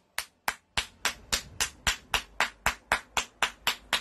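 Hands clapping in a steady rhythm, about four claps a second.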